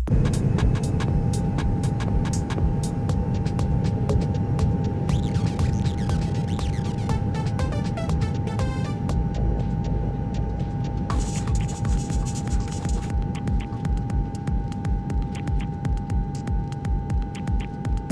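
Low throbbing hum with a steady high tone over it and many faint clicks. The pulsing becomes more distinct in the second half, about three throbs a second.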